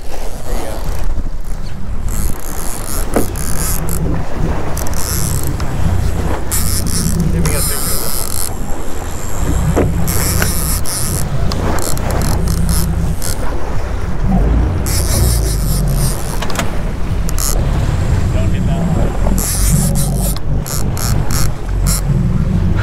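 Boat engine running with water churning at the stern and wind on the microphone, a steady low rumble with a high hiss that comes and goes every second or two.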